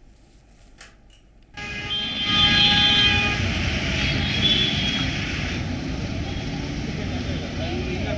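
Busy roadside street sound: traffic running steadily with a crowd talking, and a vehicle horn sounding briefly about two seconds in. The first second and a half is quiet before the street sound cuts in.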